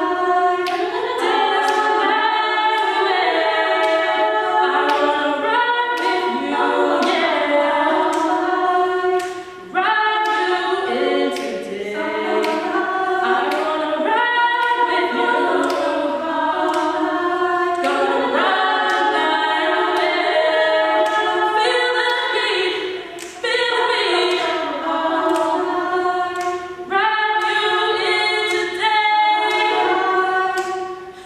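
Women's a cappella group singing in close harmony without instruments, in phrases with a few brief breaks.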